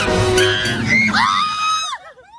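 Loud shrieking and screaming over music, with two sharp clashes about a quarter second in, cutting off suddenly near the end.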